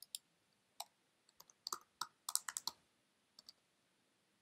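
Faint typing on a laptop keyboard: a quick, uneven run of sharp key clicks, thickest in the middle, as a channel name is keyed into the mixing software.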